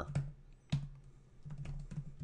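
Keystrokes on a computer keyboard: a scatter of short, sharp taps, irregularly spaced and closer together in the second half, as a short command is typed and entered.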